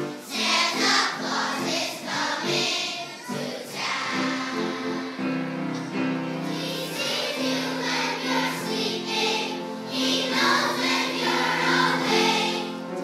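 A second-grade children's choir singing together, with several long held notes in the middle.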